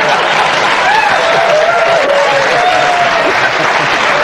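Studio audience applauding and laughing, a steady wash of clapping with a few voices rising above it.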